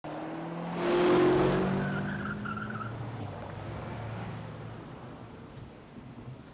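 Car engine revving hard with a tyre squeal about a second in, then settling and fading away.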